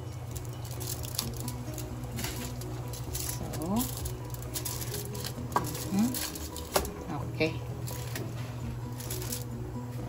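Foil-wrapped tins being set onto a metal steamer rack: aluminium foil crinkling and rustling, with light clicks and knocks of tin on metal, over a steady low hum.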